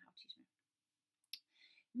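Near silence in a pause in speech, broken about a second in by one short mouth click, then a soft intake of breath just before she speaks again.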